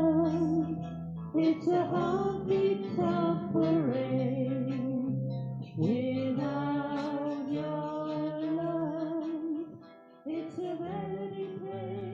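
Live acoustic band playing a song: a woman sings held, wavering notes over guitar accompaniment with steady low notes beneath. The music dips briefly about ten seconds in, then the next phrase begins.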